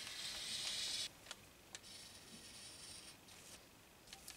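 Felt-tip marker drawn along brown pattern paper: a faint scratchy stroke lasting about a second, then a fainter stroke from about two seconds in, with a couple of light taps in between.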